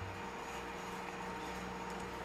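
Quiet, steady background noise with a faint electrical hum, and no distinct clicks from the pliers being handled.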